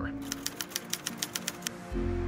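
Typewriter-style key clicks, about ten a second, rattling out over soft background music and stopping near the end, where a low music bed swells in.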